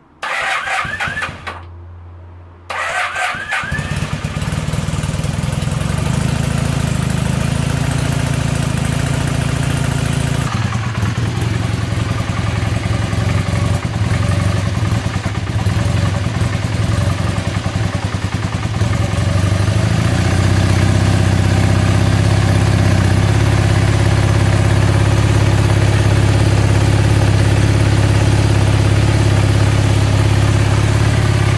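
Honda CB250N's parallel-twin engine being started cold on choke: the electric starter cranks briefly, pauses, cranks again and the engine catches, then settles into a steady idle.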